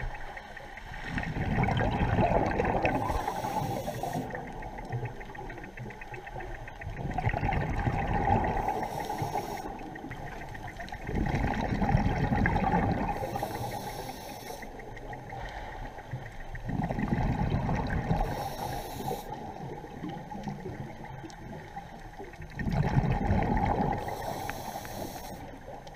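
A scuba diver breathing through a regulator underwater, a breath about every five seconds, five in all. Each breath is a loud rumbling, gurgling rush of exhaled bubbles, followed at once by a short high hiss from the regulator.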